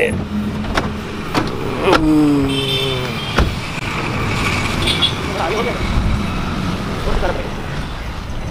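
Car and road traffic running steadily, with several sharp clicks and knocks in the first few seconds and short snatches of voice.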